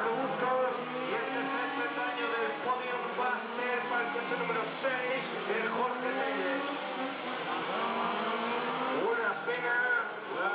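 Radio-controlled model race cars' small engines buzzing as they lap, several at once, their pitch repeatedly rising and falling as they accelerate and brake through the corners.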